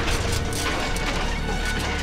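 Action-scene soundtrack: a dramatic music score mixed with metallic crashing and clattering effects, with a low rumble that grows in the second half.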